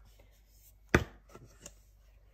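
A single sharp knock about a second in, followed by a few faint ticks.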